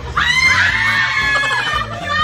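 A woman's high-pitched shriek, starting suddenly and held for about a second and a half.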